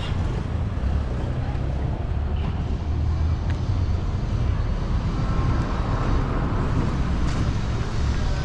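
Street traffic on a busy town road: a steady low rumble of passing cars and motorbikes.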